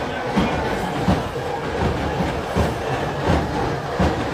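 Dense procession crowd noise with a steady rhythmic beating, a strong stroke about every three-quarters of a second with lighter ones between, typical of the drumming or chest-beating matam in a Muharram tajiya procession.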